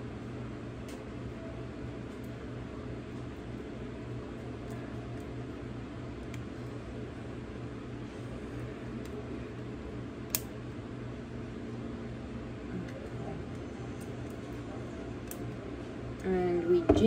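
Spatula scraping egg-yolk batter out of a ceramic bowl, faint under a steady low hum of room noise, with one sharp tap about ten seconds in.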